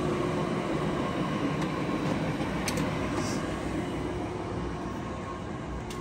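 Steady machinery hum and noise with a held mid-pitched tone that dies away about three-quarters of the way through, and a couple of faint clicks.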